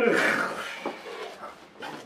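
A voice says one word with a strong hiss in it, then faint room noise with two light knocks.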